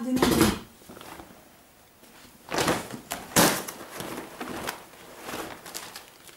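Whole sheep or goat leather hides rustling and swishing as they are handled and folded, with the loudest swishes about two and a half and three and a half seconds in.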